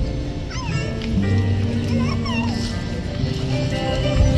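A live song: a woman singing into a microphone over held chords from a Casio electronic keyboard and an acoustic guitar, with sliding vocal phrases about half a second in and again around two seconds in.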